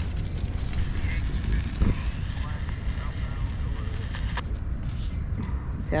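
Wind buffeting the microphone in a steady low rumble, with a dog's paws scuffing and scratching on gravel as she paws at a sunflower head. A single sharp click about four and a half seconds in.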